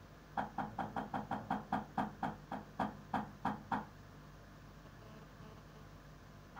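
A rapid run of about sixteen sharp knocks, four or five a second, slowing a little toward the end and stopping after about three and a half seconds.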